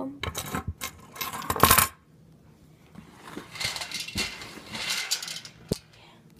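Metal handcuffs and their keys clinking and rattling as they are handled: a quick run of clinks in the first two seconds, loudest just before the two-second mark, then softer rustling and one more click near the end.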